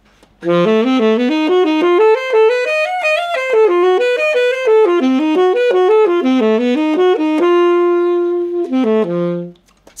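Alto saxophone playing a quick run of notes built from a pair of major triads a tritone apart, D major and A-flat major, giving an outside sound. The line ends on a long held note followed by two short notes.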